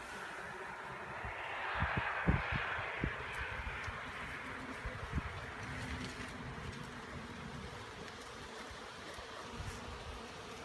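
A honeybee swarm buzzing around its cluster in a tree as the branches are disturbed, with the buzzing and leaf rustle swelling about two seconds in. A few low knocks from the branches being handled come through in the first half.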